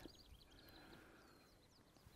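Near silence: room tone with a few faint, high bird chirps in the background.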